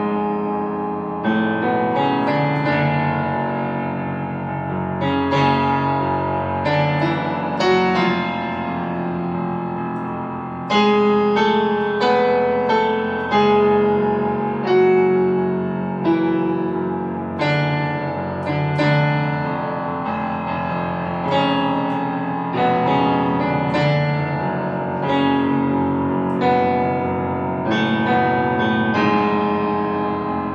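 Solo piano playing a slow, dark improvisation in F# minor, with notes and chords struck about once a second and left ringing into each other.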